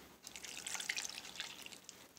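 Coconut milk poured from a steel bowl onto rice flour and ghee in a nonstick pan: a soft, uneven patter of liquid landing that thins out near the end.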